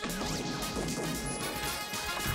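A cartoon crash-and-clatter sound effect over background music, starting suddenly at the beginning.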